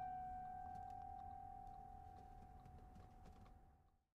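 The last note of an acoustic guitar ringing out: a single held high tone that fades slowly, then cuts off to silence near the end.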